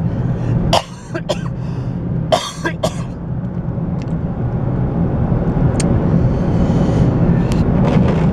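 A man coughing and clearing his throat several times in the first three seconds, over the steady hum of a car's engine and road noise inside the cabin; after that only the steady cabin hum runs on.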